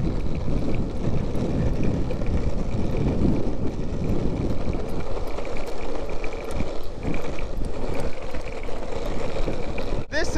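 Longboard wheels rolling fast over asphalt: a steady, rough rumble, with wind buffeting the microphone.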